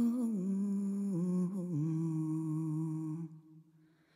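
Background music: a single voice humming a slow, wordless melody in long held notes that step downward. The phrase ends and fades out about three seconds in.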